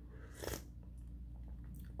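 A single short sip from a mug of coffee, about half a second in, over a faint steady low hum.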